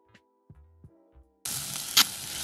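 Faint background music with a few light knocks of a knife on a cutting board, then, about one and a half seconds in, diced onion starts sizzling in hot olive oil in a saucepan, a loud, even hiss that begins suddenly.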